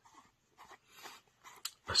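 A few faint, short breaths, with one small sharp click near the end.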